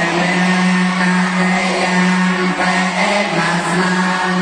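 A large group of Buddhist novice monks chanting in unison, holding one near-level note with small steps in pitch about two and a half seconds and three seconds in.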